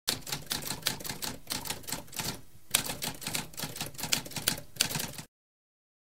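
Typewriter keys typing in a rapid, uneven clatter, with a brief pause about two and a half seconds in. It cuts off suddenly a little after five seconds.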